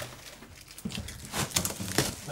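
Plastic wrapping rustling and crinkling in irregular bursts as it is pulled off a metal equipment cabinet, busier in the second half.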